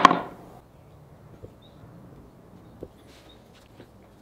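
A steel Forstner bit set down into its hole in a plywood holder: one sharp knock at the very start that rings briefly. After that it goes quiet, with a few faint ticks.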